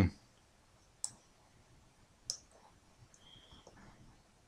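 Two sharp clicks of a computer mouse button, about a second and a quarter apart, then a few faint ticks near the end.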